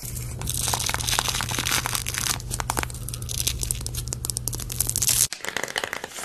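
Sticky, crackling tearing sounds from a black glitter peel-off face mask on skin, over a steady low hum. Just before the end the sound cuts off and gives way to the crinkling of plastic sheet-mask packets.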